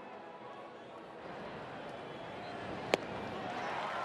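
Ballpark crowd noise growing louder, with one sharp pop about three seconds in: the pitch smacking into the catcher's mitt on a swinging strike.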